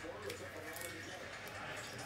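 Faint handling of a trading card and its clear plastic holder, with a few light clicks, under a faint voice in the background.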